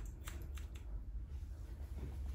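Barber's hair-cutting scissors snipping hair held between the fingers: a few short, quiet snips over a low steady hum.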